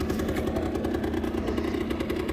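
Honda Gyro Up 50cc two-stroke engine running at a steady idle, with an even rapid pulse.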